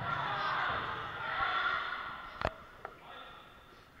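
Several voices shouting and calling over each other in a reverberant sports hall, fading after about two seconds. About two and a half seconds in comes one sharp smack of a ball, with a fainter knock just after.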